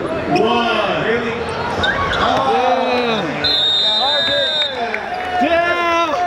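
Excited shouting and cheering from players and onlookers on an indoor basketball court as the game ends, with a few ball bounces. A high, steady whistle sounds for about a second a little past the middle.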